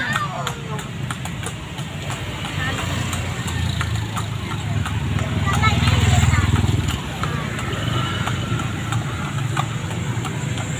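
Hooves of a cart horse clip-clopping on the road as it pulls a horse-drawn cart, amid street noise. A low engine rumble swells and fades about halfway through, like a motor vehicle passing close by.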